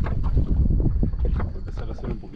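Wind buffeting the microphone as a heavy low rumble, with scattered knocks and clicks and fragments of voices.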